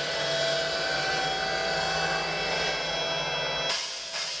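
A live band's synthesizer drone: a steady, noisy wash with several held tones over a low hum. It cuts off suddenly near the end as drums and guitar come in.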